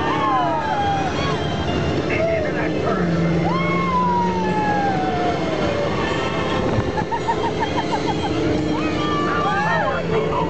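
Riders on an open-top ride vehicle whooping, with long falling screams and a short burst of laughter about seven seconds in, over the steady rush of wind and the car running along the track.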